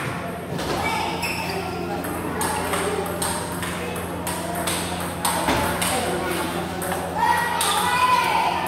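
Table tennis ball clicking off rubber paddles and the table in rallies, a series of short sharp pings with brief gaps, over voices in the hall.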